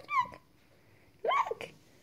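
Two short, high-pitched vocal squeals from a toddler, one right at the start and another about a second and a quarter in.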